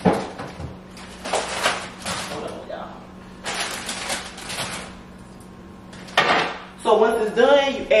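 Kitchen handling sounds while arugula is put on a pizza: a sharp knock at the start, then several bursts of rustling as the leaves and their packaging are handled, over a faint steady low hum.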